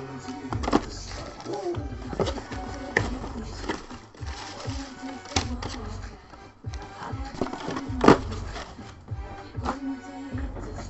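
Cardboard box and plastic packaging being handled, with several sharp knocks, the loudest about eight seconds in, over background music.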